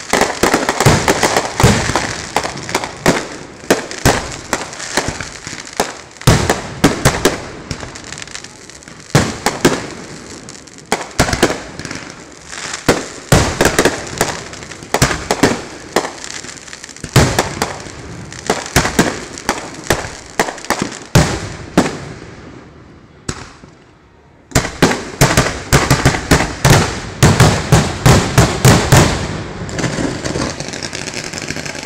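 Consumer fireworks going off close by in rapid runs of sharp bangs and crackles. The cracks thin out into a brief lull near the end, then resume in a dense, rapid barrage.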